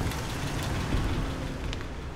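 A car engine running with a low rumble, slowly fading away.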